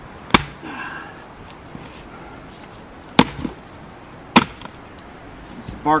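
Splitting axe striking a large birch firewood round three times, each a sharp chop: the first shortly after the start, then two more about a second apart. The round is twisted crotch wood, so it chips away rather than splitting cleanly.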